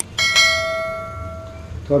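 Notification-bell sound effect of a subscribe-button animation: a mouse click, then a bright bell ding that rings and fades away over about a second and a half.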